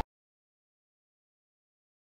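Silence: the sound track is empty.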